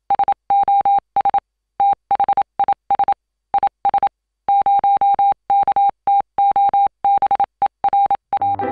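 Morse code: a single steady electronic beep tone keyed on and off in a run of short and long pulses with uneven gaps.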